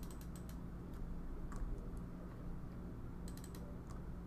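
Computer keyboard keys clicking in short runs: a quick burst of keystrokes near the start, a single one in the middle and another burst near the end, over a low steady hum.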